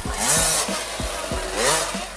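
KTM 50 SX children's motocross bike's two-stroke single-cylinder engine revving up and down as it is ridden, with two louder revs near the start and about a second and a half later.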